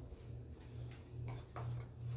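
A low hum pulsing on and off about twice a second in an even rhythm, with a few faint clicks in the second half.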